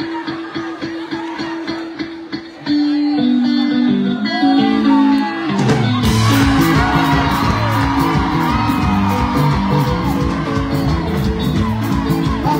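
Live band music: held chords over a light steady beat with a few short sung phrases, then at about six seconds the full band comes in with drums and bass at a louder, driving beat.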